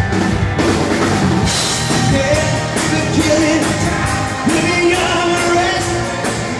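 Live rock band playing: electric guitars, keyboard and drum kit, with a woman singing lead. About four and a half seconds in, a note is held for over a second.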